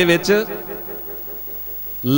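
A man's amplified voice ends a phrase about half a second in, then a pause of faint room tone with a low steady hum from the sound system.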